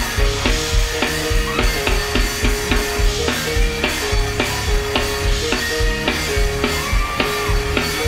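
Live gospel band playing an up-tempo number: a drum kit with a steady, driving kick-drum beat, with electric bass, electric guitar and keyboard.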